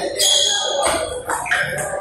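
Table tennis rally: the ball makes several sharp clicks off the bats and the table, over the background noise of a busy hall.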